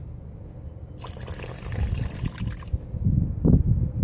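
Water poured off the edge of a plastic gold pan splashes into a bucket of muddy water for a couple of seconds, starting about a second in, as excess water is drained from the concentrate. Low rumbling thumps follow near the end, louder than the pour.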